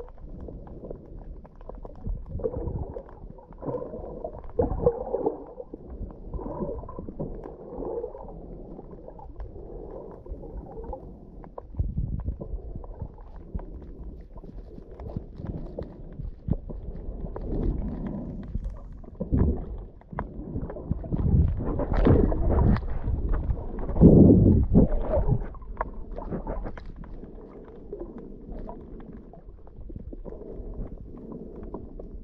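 Underwater sound picked up by an action camera in its housing: muffled water movement and gurgling with irregular low thumps, swelling louder about two-thirds of the way through.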